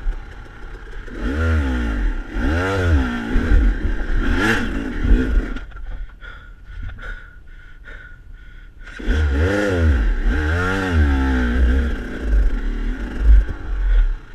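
SmartCarb-equipped KTM dirt bike engine revving up and down in quick throttle blips, in two spells of a few seconds each, with quieter running in between near the middle.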